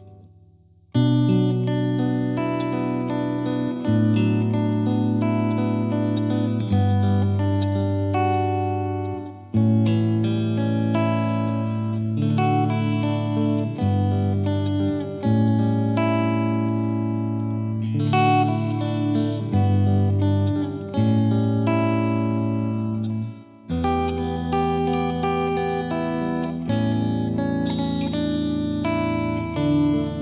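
Background instrumental music with plucked-string chords that change every two to three seconds. It comes in about a second in, after a brief gap.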